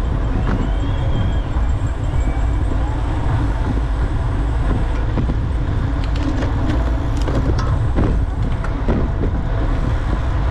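Steady low wind rumble on a bicycle-mounted camera's microphone while riding, with tyre and road noise underneath. Scattered sharp clicks come in the second half.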